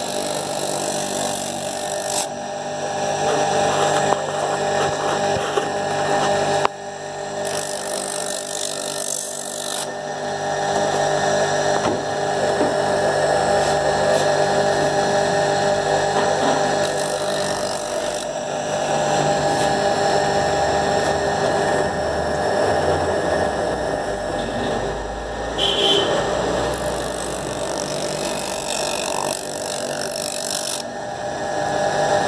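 Slipper edge-grinding machine running: its motor hums steadily while foam flip-flop soles are pressed against the spinning wheel, adding a rough grinding hiss that comes and goes as each sole is worked.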